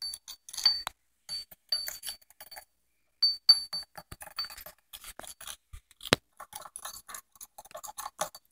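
A wooden stick stirring and tapping a mix of nail glitter and tiny caviar beads in a small glass dish: irregular light clicks and clinks, some with a brief glassy ring, and one sharper knock about six seconds in.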